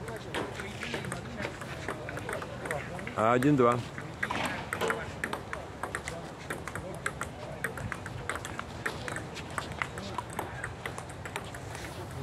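Table tennis rally: the ball tapping back and forth off the paddles and the table in quick, irregular clicks, with a short exclamation from a voice about three seconds in.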